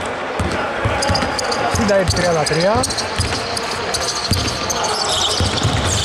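A basketball bouncing on a wooden indoor court as it is dribbled, in a string of irregular knocks.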